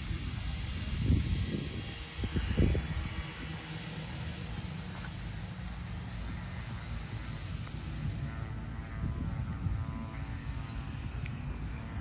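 Wind buffeting the microphone, with the faint whir of an electric RC Twin Otter's twin motors spinning 14x6 propellers in flight; the propeller tone comes through more clearly about eight seconds in.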